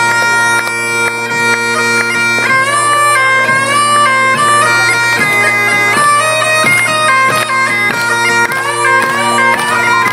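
Highland bagpipes playing a tune: a melody stepping between held high notes over the steady, unbroken drones.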